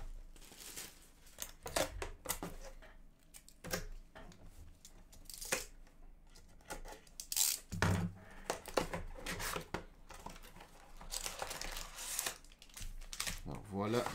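A cardboard hockey card box being torn open by gloved hands: irregular crinkling, tearing and scraping of its wrapping and cardboard, with a longer stretch of rustling near the end.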